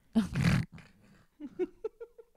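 A woman laughing: one breathy burst of laughter, then, from about halfway through, a quick run of short laugh pulses.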